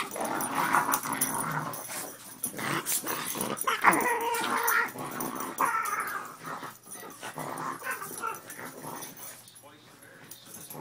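Two Boston Terriers growling in play as they wrestle over a rope toy, the growls coming in uneven spells and fading toward the end.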